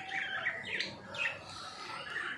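Pet budgerigars chirping: a run of short, quick chirps, each falling in pitch.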